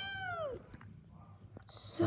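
House cat meowing: one drawn-out meow that falls in pitch as it ends, about half a second long, from a cat eager to get at a rabbit it sees outside.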